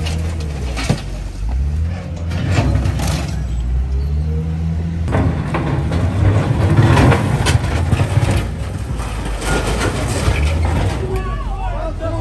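Hyundai wheel loader's diesel engine running and revving under load, with repeated crashes and scrapes of rubble and corrugated sheet metal as the bucket tears down a small structure. Voices are heard near the end.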